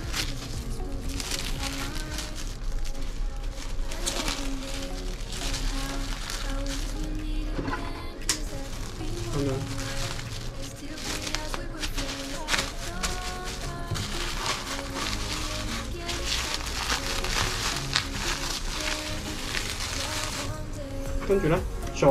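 Background music over the crinkling of clear plastic wrap being folded by hand around a salt-packed fish roe.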